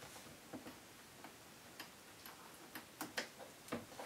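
Faint, light clicks and ticks, roughly two a second and not quite regular.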